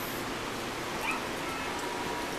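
A young Cane Corso gives a faint, brief whine about a second in, its pitch dropping in steps, over a steady rushing background.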